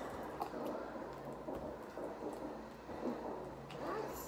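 Faint wet squishing and crackling of hands kneading sticky glue slime in a glass bowl.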